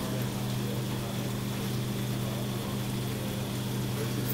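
Steady low hum with a hiss of moving water over it, typical of marine aquarium pumps and filtration running.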